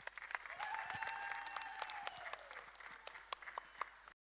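Guests clapping in a scattered, uneven way, with one voice holding a long call in the middle that falls in pitch as it ends.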